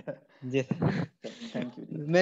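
Speech: a person's voice talking in short bursts, over an online class call.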